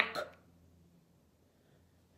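The end of a woman's spoken word and a short vocal sound just after it, then near silence: room tone with a faint low hum.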